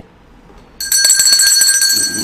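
A bright bell-like ringing tone, made of several steady high pitches with a fast even flutter, starts about a second in and holds loud, beginning to fade near the end.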